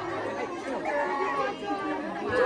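Several people chattering at once, overlapping voices with no single clear speaker.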